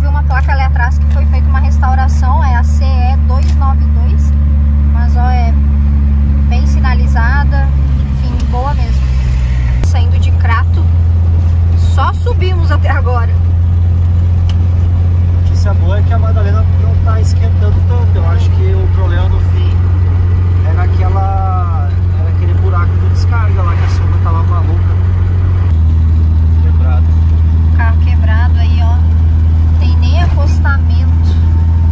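Steady low drone of a Volkswagen Kombi's engine heard from inside the cab while driving, with a voice over it.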